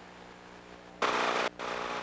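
Faint hum and hiss of an old recording. About a second in, a sudden loud burst of noise lasts about half a second, then drops to a steadier hiss.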